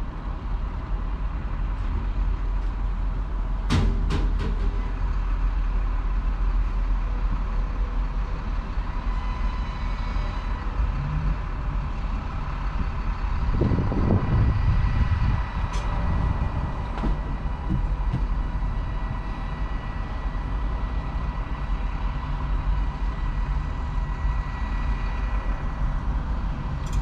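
A stopped vehicle's engine idling, heard from inside the cabin as a steady low rumble. A sharp clack sounds about four seconds in, and a louder rumble swells and fades around the middle.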